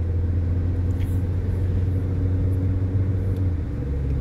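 Steady low machine hum and rumble with no speech, its pitch shifting slightly near the end.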